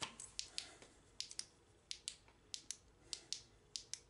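Push-button tail switch of a steel UV flashlight clicked over and over, cycling through its light modes: a rapid series of sharp clicks, often in quick pairs.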